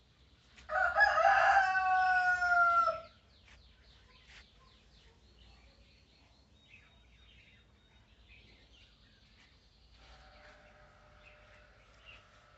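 A rooster crowing once, loud and about two seconds long, starting under a second in, its drawn-out last note falling in pitch. Faint bird chirps follow.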